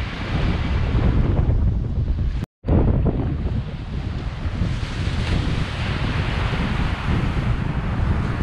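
Wind buffeting the microphone over the wash of sea surf breaking on a sandy beach. The sound cuts out completely for a split second about two and a half seconds in.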